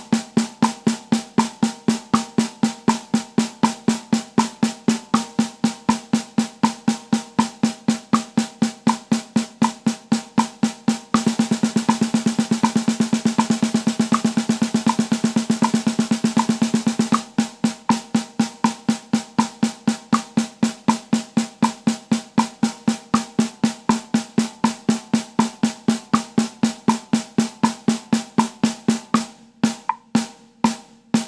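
Snare drum played with sticks at an even tempo over a metronome click at 80 BPM. It plays eighth-note triplets, about four strokes a second, then switches about eleven seconds in to sextuplets, a dense run of about eight strokes a second. About seventeen seconds in it goes back to eighth-note triplets, and it slows to quarter-note triplets near the end.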